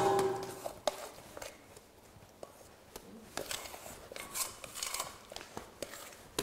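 Quiet handling sounds of sourdough being emptied from an enamel bowl into a stainless-steel mixer bowl: light scraping and rubbing with small clicks, a sharper knock a little under a second in.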